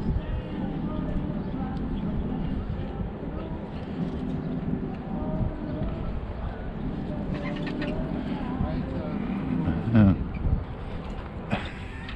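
Outdoor ambience of indistinct voices over a steady low rumble, with one louder voice briefly about ten seconds in.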